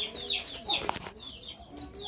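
Chickens calling: short high peeps that sweep downward, about three a second, over lower clucking notes. A single sharp click comes just before halfway.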